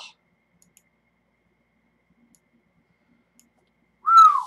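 Near silence: room tone with a handful of faint, short clicks scattered through it.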